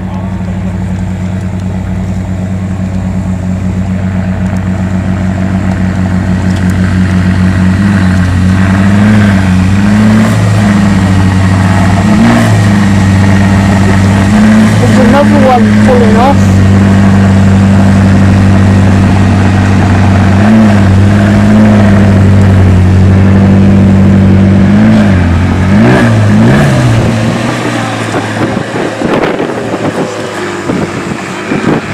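Drive motors of a powered wheelchair running with a steady low hum. The hum swells over the first several seconds, wavers in pitch a few times, and dies away near the end.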